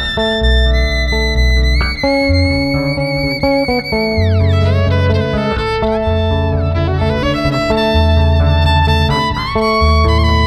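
Electric violin playing a slow melody with long held notes, sliding between them and falling away about four seconds in, over a deep plucked electric bass line.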